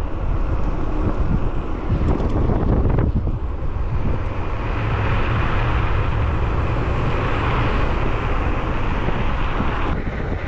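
Steady wind roar on a camera microphone while riding an electric scooter at speed, with the heaviest rumble low down and a hissier edge coming in from about halfway through.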